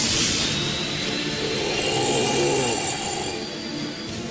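Dramatic anime soundtrack: a sudden rush of noise at the start, then sustained high ringing tones held over a dense orchestral-like bed.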